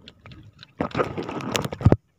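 Water sloshing against a small canoe's hull, with a run of knocks and clatter starting about a second in that stops abruptly.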